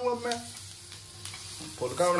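Diced potatoes and green capsicum sizzling in oil in a nonstick pan while a silicone spatula stirs them, with a few soft scrapes.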